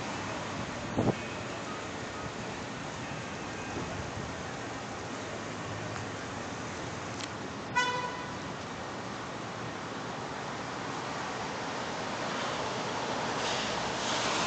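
Steady outdoor city hiss of distant traffic, with a brief knock about a second in and a single short car-horn toot about eight seconds in.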